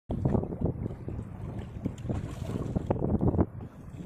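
Wind buffeting the microphone on a small open boat at sea, a low, uneven rumble in gusts that eases briefly near the end.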